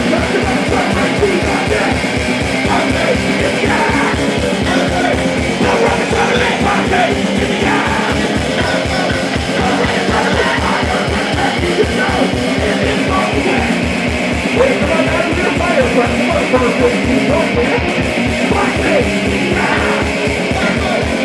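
Loud live rock band playing: electric guitars and a steady, driving kick drum, with yelled vocals over the top.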